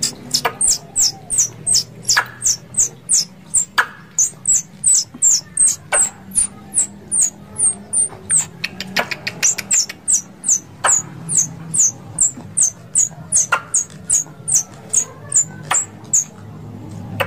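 Plantain squirrel (tupai kelapa) calling: a long, even run of short, high-pitched chirps, about three a second, each dropping slightly in pitch, with a few sharp clicks in between. This is the chattering call used as a lure to draw squirrels in.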